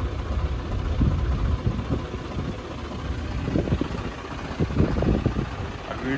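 John Deere 5405 tractor's diesel engine running steadily under load while driving a heavy rotavator through soil, with the rotor churning the ground. A few short knocks come in the second half.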